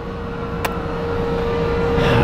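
A steady mechanical hum over a low rumble that grows louder, with a single sharp click about two-thirds of a second in.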